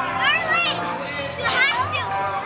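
Children's high-pitched voices shouting and calling out as they play, in two short bursts that rise and fall in pitch.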